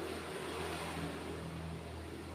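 A steady low motor hum, like an engine running, with no speech over it.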